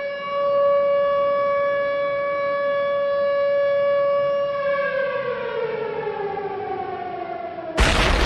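Siren-like sound effect: one steady tone held for about four and a half seconds, then sliding down in pitch as it winds down. It cuts off just before the end, where a loud hit comes in.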